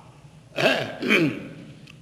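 A man coughs and clears his throat about half a second in, then says a short "uh" before going on speaking.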